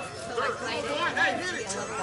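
Indistinct chatter of several people talking over one another, with no bat hit or other distinct sound standing out.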